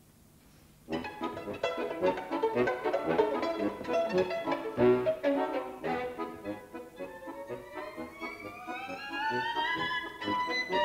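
Violin coming in suddenly after a second of near silence with a quick run of short bowed notes, then a long upward slide in pitch toward the end.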